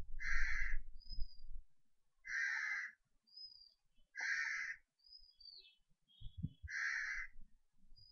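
A bird calling: four harsh calls of about half a second each, spaced roughly two seconds apart. Short, thin whistles sound between them, and a low rumble runs under the first second and a half.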